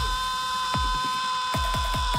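Electronic dance music over a concert sound system: one long steady high note held over repeated falling bass drops, which come faster near the end.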